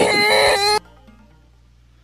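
A drawn-out, high-pitched cry that rises and then holds, cut off suddenly less than a second in; only a faint background hum remains after it.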